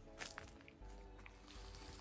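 Near silence: faint outdoor background with a few soft footsteps on grass.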